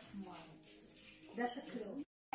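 Low chatter from a small group of women, with one voice rising briefly near the end.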